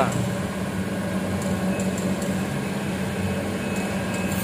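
A steady, low mechanical hum with no change in pitch or level.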